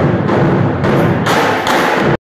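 Percussion group of drummers playing together, a dense, loud rhythm of drum strokes with heavy bass drums.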